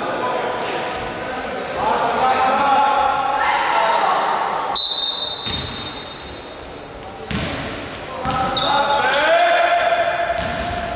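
Basketball bouncing on a sports-hall floor, with players' shoes squeaking and voices shouting, all echoing in the large gym. A high squeak lasts about a second near the middle.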